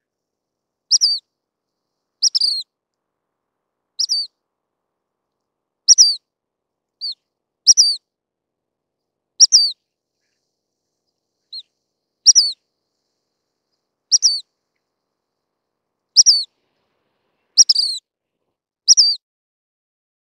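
Dark-sided flycatcher calling: a short, thin, high note that slides down in pitch, repeated about every one and a half to two seconds, with two fainter, shorter notes in between.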